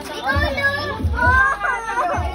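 Excited children's voices shouting over one another, with high-pitched cries.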